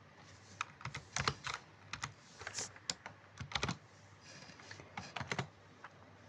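Computer keyboard keystrokes: irregular taps in short bursts, with louder clusters about a second in and again about three and a half seconds in.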